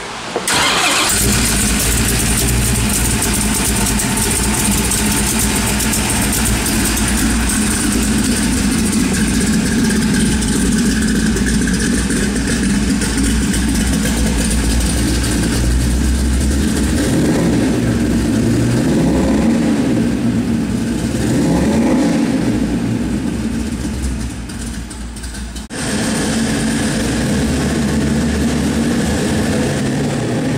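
Ford 351 Windsor V8, bored and stroked to 427 cubic inches with a four-barrel carburettor, starting at once and settling into a steady idle. Several throttle blips rise and fall in pitch about two-thirds of the way through. The sound dips briefly and then jumps abruptly back to steady running near the end.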